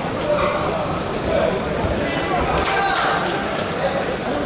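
Indistinct voices chattering in a large, echoing sports hall, with a few sharp clicks about three seconds in.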